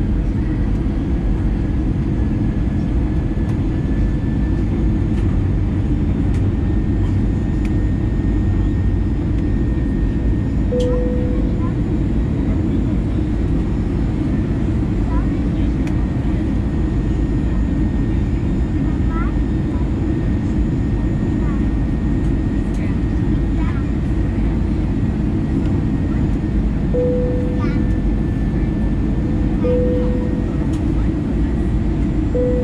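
Steady interior cabin noise of an Airbus A320-214 jet airliner in descent: a loud, even, low rush of airflow and CFM56 turbofan engine noise, with a constant hum that swells briefly about a third of the way in and again near the end.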